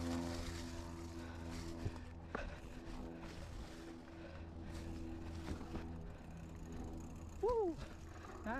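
Mountain bike riding along a dirt trail covered in dry leaves, with a steady rumble of wind and tyre noise on the microphone and scattered small knocks from the bike going over the ground. A brief falling voice sound comes near the end.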